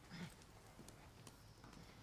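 Near silence: room tone with a few faint footsteps and a brief low voice sound just after the start.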